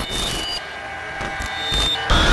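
Electronic glitch sound effect: short high-pitched beeps that shift in pitch over a low hum and hiss, getting louder near the end.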